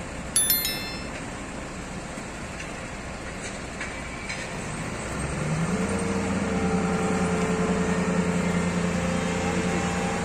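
Steady traffic-like noise. A brief high chime sounds about half a second in. About five seconds in, an engine's note rises and then holds steady.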